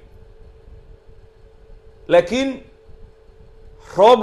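A man talking to camera, with a pause of about two seconds at the start, then a short phrase and more speech near the end. A faint steady hum runs underneath, heard plainly in the pause.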